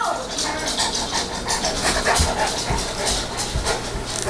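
Saint Bernard panting, a quick even rhythm of about four or five breaths a second, with a few low thumps near the middle as the big dog shifts and gets up.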